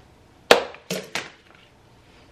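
Scissors snipping through cotton macrame cord: three sharp clicks, the first the loudest.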